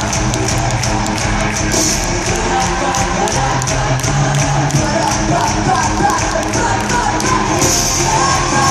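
Rock band playing live over an arena PA, with a steady drumbeat and singing, heard with the big-hall echo of an arena recording.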